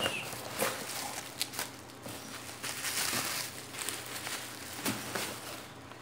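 Cardboard box and bubble-wrap packaging being handled: irregular rustling and crinkling with scattered sharp clicks, thickest about halfway through, as a blister-packed wire stripper is taken out of the box.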